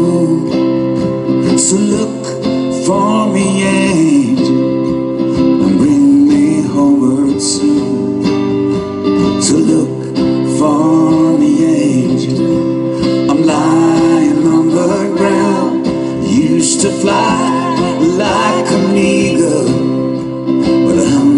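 Live acoustic song: two acoustic guitars strummed and picked, with singing at times.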